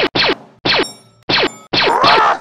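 Shots from a Sig MPX pistol-caliber carbine fired in a fast string, about five in two seconds and unevenly spaced, each a sharp crack.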